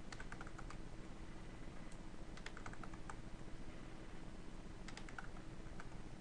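Computer keyboard keystrokes in short bursts of a few quick taps each, three or four bursts in all, as a number is typed into a field. A faint steady electrical hum runs underneath.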